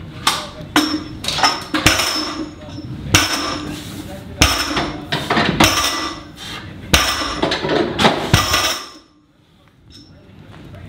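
Weight plates on a loaded trap bar clanking and ringing metallically as the bar is lifted and set down. There are a dozen or so sharp knocks at an uneven pace, and they stop shortly before the end.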